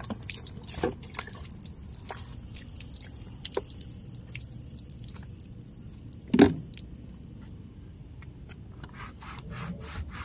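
Water poured from a plastic bottle splashing and dripping on a car's door panel, with small clicks and knocks of the bottle. A single loud knock comes about six and a half seconds in, and a cloth starts rubbing the door trim near the end.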